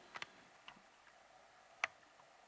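Quiet room with three faint, sharp little clicks; the last one, near the end, is the clearest.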